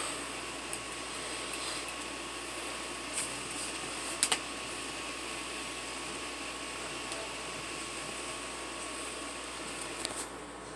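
Steady fan-like hiss in a small room, with a few short light clicks, two of them close together about four seconds in.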